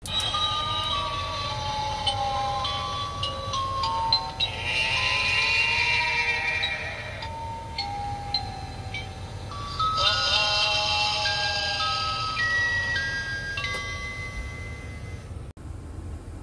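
Animated Halloween zombie prop playing a spooky electronic tune of bell-like notes, stepping up and down. The tune is broken twice by a longer, raspy, hissing sound.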